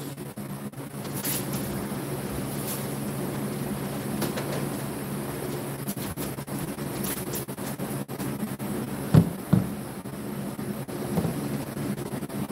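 Steady background hum with faint low tones, with two short knocks about nine seconds in as the removed projector lamp module is handled on the table.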